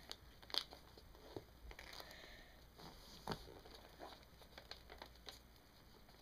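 Faint crinkling and rustling of a sheet of white paper being folded and creased by hand, with a couple of sharper crackles, one about half a second in and one about halfway through.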